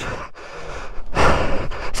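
A man breathing hard after exertion, with one loud heavy exhale about a second in.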